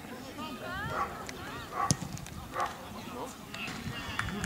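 Short shouts and calls from football players and spectators, with two sharp knocks near the middle, the second a little under a second after the first.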